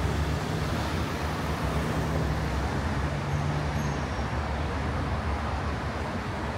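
Street traffic: road vehicles running past, with a steady low engine hum that stops about four seconds in.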